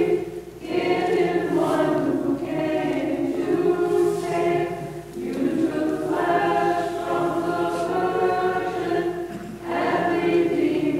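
Choir singing a slow liturgical hymn in long held phrases, with short breaks about half a second in, at five seconds and near the end.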